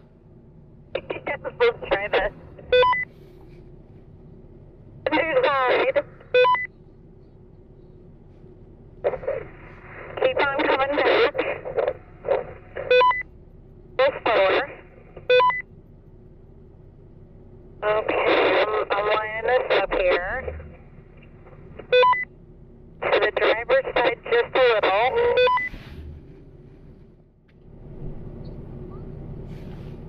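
Voices coming over a two-way radio in short transmissions, each ending in a brief beep, over a steady low hum.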